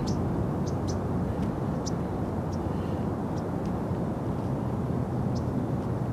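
Steady low rumble of outdoor background noise, with a few faint, short, high chirps scattered through it.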